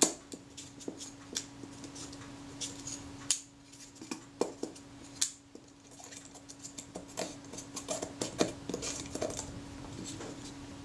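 Scattered light metallic clicks and taps as the Rolleiflex Automat's shutter release button and the metal body part around it are handled and worked, the release stem freshly wiped of sticky old oil. The sharpest click comes right at the start.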